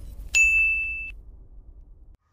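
A single bright 'ding' sound effect from an animated logo intro: one high, clear tone that starts suddenly about a third of a second in, holds for under a second, then cuts off, leaving a fading tail.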